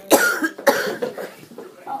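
A person coughing several times in quick succession: three or four short, harsh coughs in the first second or so.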